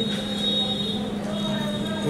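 Room tone between sentences: a steady low electrical hum and hiss, with a faint high-pitched whine.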